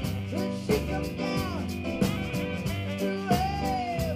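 Live rock-blues band playing a song, with a drum kit keeping a steady beat under electric guitars, bass and saxophone.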